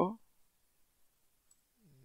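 A few faint computer-keyboard keystrokes in a quiet pause.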